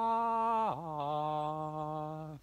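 A man singing sustained notes on an open vowel as a vocal warm-up exercise. He holds one note, swoops briefly down and back up a little under a second in, then settles on a lower held note.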